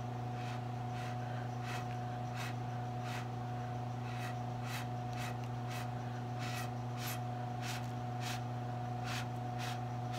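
Short puffs of breath blown through a drinking straw onto wet acrylic paint, about fifteen in all, one or two a second, over a steady low hum.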